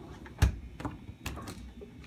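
Refrigerator's freezer compartment being pulled open: a sharp thump about half a second in as the door seal lets go, followed by a few light clicks and rattles.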